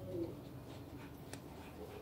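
Faint short dog whines, one near the start and another near the end, with a soft click in between.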